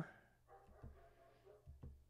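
Near silence: room tone, with two faint low thumps about a second apart.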